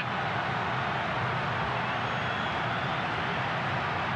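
Steady stadium crowd noise: the many voices of a large football crowd blending into an even din.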